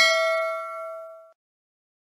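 Bell-like 'ding' sound effect of a clicked notification bell icon, ringing and fading, then cut off abruptly a little over a second in.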